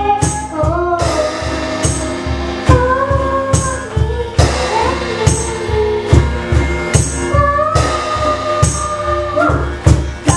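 A young girl singing a slow pop ballad, holding long notes, over guitar and a backing track with a steady beat about twice a second and regular high jingles.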